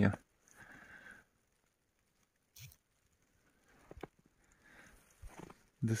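A few faint, irregular footsteps squeaking and crunching in fresh snow, with short sharp sounds about 2.6 s and 4 s in.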